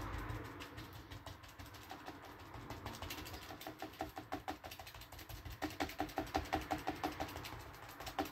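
A short-bristled round brush dabbing thick acrylic paint onto paper in quick, even taps. The taps are faint at first and grow louder and faster a little past halfway, to about seven a second.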